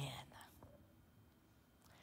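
A softly spoken word at the very start, then near silence: room tone.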